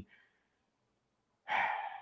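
Near silence for about a second and a half, then a man's short, breathy sigh just before he goes on talking.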